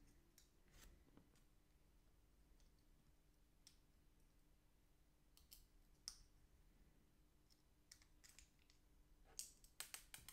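Near silence broken by a few faint, scattered clicks of small parts handled: a flight-controller circuit board and its standoffs being fitted together by hand. The clicks bunch together near the end.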